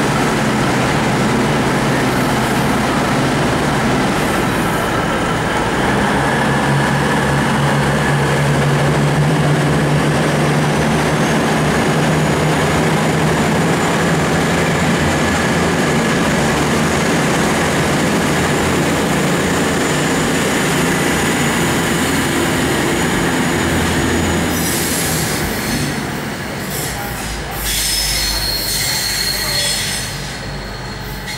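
V/Line VLocity diesel multiple unit moving through the station, its diesel engines running with a steady low drone and a thin high wheel squeal through the middle. Near the end the engine sound falls away and a run of sharp clicks and rattles comes in.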